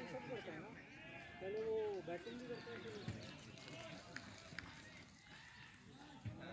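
Indistinct voices of people talking and calling out across the field, with one drawn-out call loudest about a second and a half in. Two short sharp clicks sound a little past the middle.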